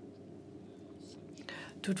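A pause in speech with only a faint low hum, then a quick intake of breath about one and a half seconds in and a voice starting to speak right at the end.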